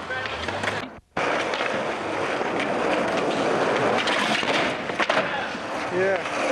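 Skateboard wheels rolling on concrete, a steady rumble with scattered clicks and knocks from the board. It breaks off briefly about a second in, then picks up again.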